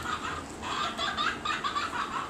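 A small electronic toy giving a quick run of short, high, clucking notes, with a slight pause about half a second in.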